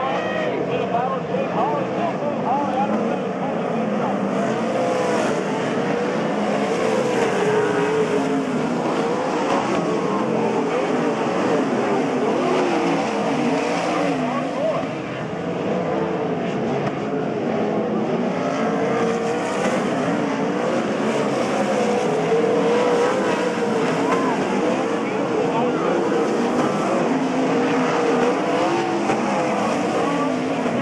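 A field of winged sprint cars' V8 engines racing, several engines at once rising and falling in pitch as they throttle on and off through the turns, with a brief dip in loudness about fifteen seconds in.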